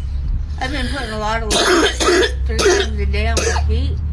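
A person's voice making short wavering vocal sounds, mixed with coughing and throat clearing, over a steady low hum.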